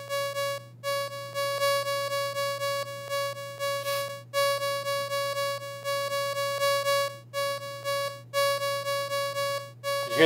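One synthesized note repeated over and over at the same pitch, several times a second, each note louder or softer than the last. A Max patch is setting MIDI velocity from a Markov transition table, which makes stressed and unstressed beats. The run breaks off briefly a few times.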